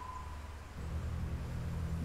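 A single high beep-like tone fades out at the start, then a quiet, steady low drone from the TV episode's soundtrack comes in under a second in.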